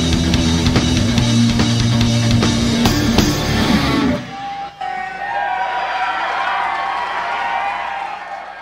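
A live reggae rock band, with drum kit, bass and electric guitar, plays the closing bars of a song and stops abruptly about four seconds in. Crowd cheering follows, with a few held tones over it.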